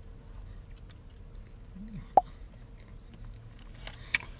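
Quiet chewing of a soft mouthful of cheesecake, with a short closed-mouth "mm" a little under two seconds in and one sharp, brief mouth sound just after it.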